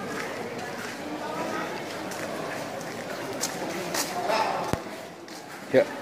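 Indistinct, overlapping voices of people talking, a steady background murmur of conversation.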